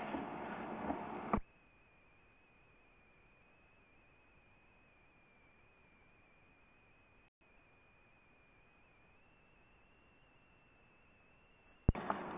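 Near silence: faint hiss with a thin steady high whine. A stretch of low background noise at the start cuts off suddenly about a second and a half in.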